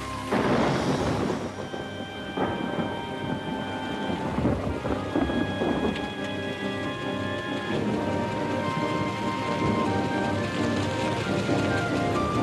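Thunderstorm: a loud crack of thunder just after the start, then rolling thunder over steady heavy rain. Held notes of background music sound under the storm through the first two-thirds.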